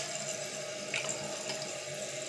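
Fluidmaster toilet fill valve running with the water back on, a steady hiss of water flowing into the tank, with a couple of faint clicks.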